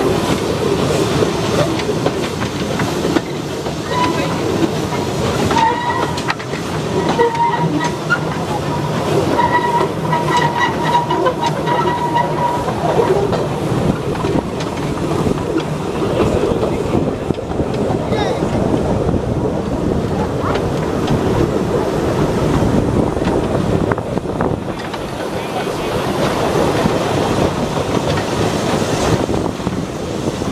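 Open passenger wagons of a small railway rolling along the track: a steady rumble and rattle of wheels on rails, with a thin high squeal coming and going from about four to twelve seconds in.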